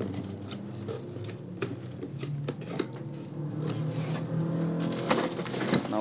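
Cardboard box being moved aside and a clear plastic bag crinkling around an electric planer as it is handled: a string of small crackles and taps over a steady low hum.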